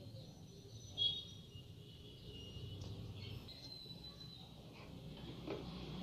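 Quiet steady background hum with a few faint high chirps, birdlike, between about one and three and a half seconds in, and a soft knock about a second in.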